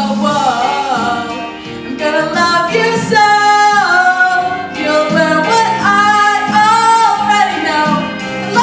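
A female vocalist singing a show tune into a handheld microphone over instrumental accompaniment, holding long notes, one of which slides down about halfway through.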